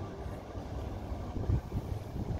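Low, uneven rumble of wind buffeting the microphone, with no clear tones or strikes. It swells briefly about one and a half seconds in.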